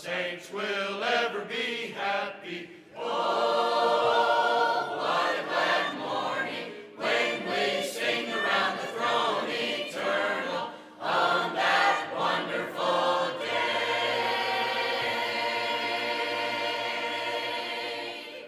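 Mixed church choir singing a hymn. Near the end the choir holds one long final chord for about four seconds, and it fades out as the song ends.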